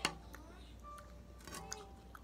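A metal fork clinks sharply once against a ceramic plate, followed by a few faint clicks of the fork among the food, with faint short tones in the background.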